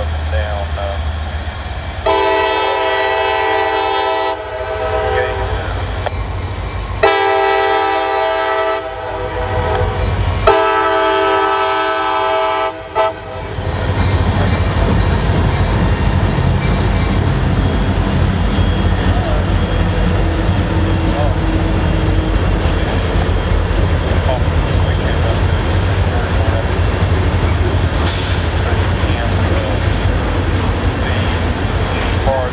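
A diesel freight locomotive's multi-tone air horn sounds three long blasts for a grade crossing, the third ending about 13 seconds in. After that comes the steady low rumble and wheel noise of the freight train passing over the crossing.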